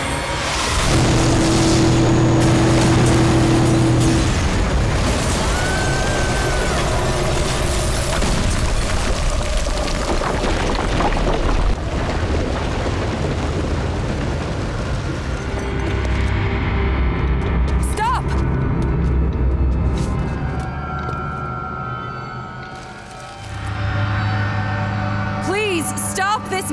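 Animated-film sound effects of a giant mech exploding in a long blast and crashing down, under dramatic orchestral score. The explosion noise dies away about two thirds of the way through, leaving the music.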